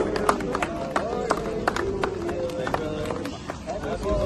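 A crowd of people clapping together at a steady beat of about three or four claps a second, with a group of voices singing along.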